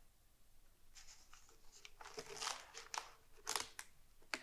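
Paper rustling as the pages of a large bound book are handled, starting about a second in and growing busier, with several sharp crackles and taps in the second half.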